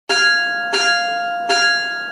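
A bell struck three times, about three-quarters of a second apart, each strike ringing on into the next with the same clear pitch.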